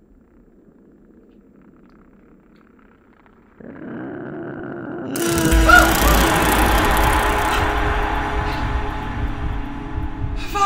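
Horror film score: a faint low drone that swells a few seconds in, then breaks into a loud jump-scare sting with deep bass about five seconds in, sustained and dissonant.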